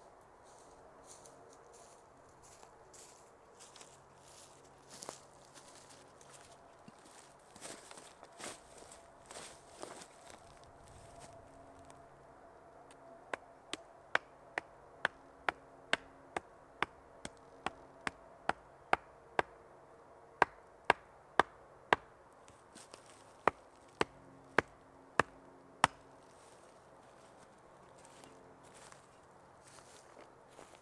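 Hatchet pounding a wooden stake into the ground: a run of about two dozen sharp, evenly spaced knocks, about two a second, with a short break partway through. Before the knocks there is softer rustling and shuffling in leaf litter.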